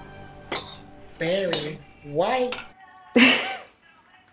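Short wordless vocal sounds from a woman, three of them, each bending up and down in pitch, with a clink of china cups about half a second in.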